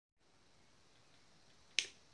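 Quiet room tone, then a single short, sharp click near the end.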